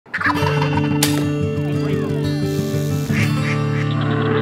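A wild turkey tom gobbling in short bursts over intro music with steady sustained tones.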